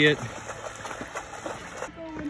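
Faint, irregular splashing of deer hooves wading through shallow water over ice.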